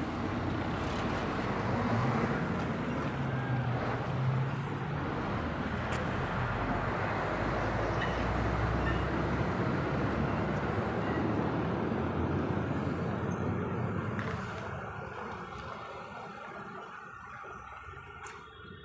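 Street traffic noise, with a vehicle engine running close by early on. The noise dies down over the last few seconds.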